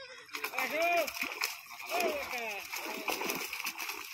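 Water splashing as fish thrash inside a drag net being gathered in shallow pond water, with men's voices calling out over it.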